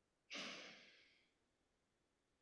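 A single breathy sigh that starts about a third of a second in and fades out over about a second, against near silence.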